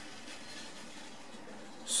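Steady faint background hiss, room tone with no distinct event, until the hiss of a spoken word begins right at the end.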